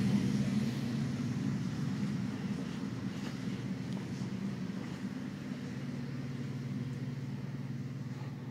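A steady low mechanical hum that slowly fades.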